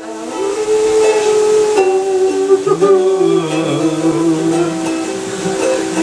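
Ukulele playing, with voices holding long sung notes over it; a lower voice joins about halfway through.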